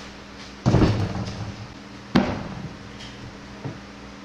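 Heavy wooden knocks and thuds as a board carrying a large clay sculpture is set down onto a banding wheel on a table. The first thud comes under a second in, a sharper knock follows about a second and a half later, and a faint knock comes near the end, over a steady low hum.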